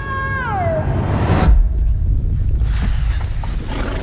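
A snow leopard's yowl: a single call that falls in pitch over most of a second, followed about a second and a half in by a deep rumble.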